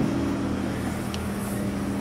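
A steady low mechanical hum, two even tones over a low rumble.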